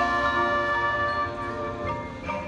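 Marching band music: the brass holds a sustained chord that fades after about a second and a half, with bell-like mallet percussion notes coming in near the end.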